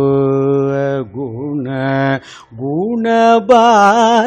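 A male voice singing Sanskrit verse in Carnatic style, in raga Sahana. Long held vowels are broken by two short dips, then a rising phrase with wavering gamaka ornaments near the end.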